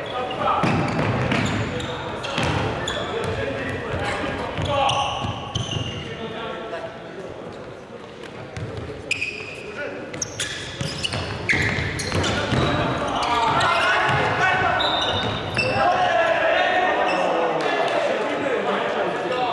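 Indoor futsal play in an echoing sports hall: players' shouts and calls, with repeated sharp thuds of the ball being kicked and bouncing on the wooden floor.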